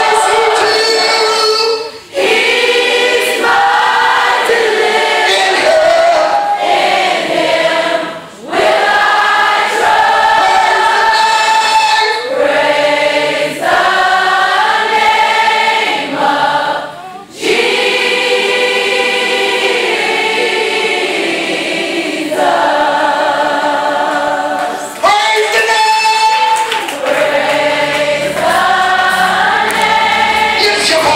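A crowd of many voices, largely girls and young women, singing a gospel song together in long held phrases, with brief breaths between phrases. A low steady tone joins near the end.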